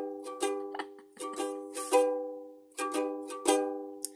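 Strummed chords on a five-dollar plastic toy ukulele: quick groups of strums, with one chord left ringing and dying away about halfway through before the strumming picks up again. The player believes it is mis-strung, with the C string where the G string should be.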